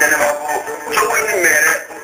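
A man singing a melodic vocal line over instrumental accompaniment, with no break in the music.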